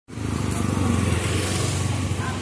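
Motorcycle passing close by, its engine running with a steady low hum.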